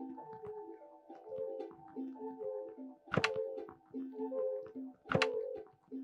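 Live experimental electronic music: short pitched tones repeating in a loose pattern, broken by two loud, sharp hits about three and five seconds in.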